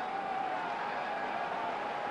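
Steady wash of surf breaking on a sandy beach, with a faint held tone sliding slightly in pitch over it.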